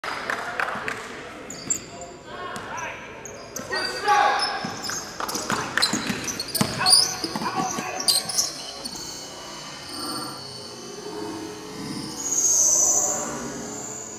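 A basketball bouncing on a hardwood gym floor during a game, with sharp high shoe squeaks and players' voices echoing in the hall. The bounces and squeaks are busiest over the first eight or nine seconds and thin out after that.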